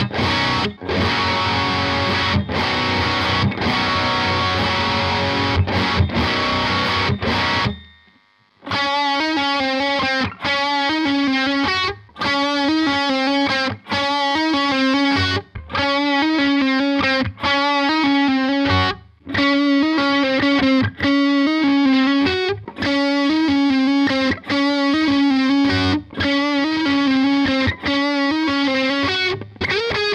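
Electric guitar played through a distortion or overdrive pedal. Thick, sustained distorted chords stop about eight seconds in, and after a short break a riff of single notes repeats in short phrases with brief gaps between them, with the pedal switched from the white one to the pink one along the way.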